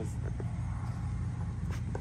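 A steady low rumble, with a few faint rustles as pepper plant leaves are handled.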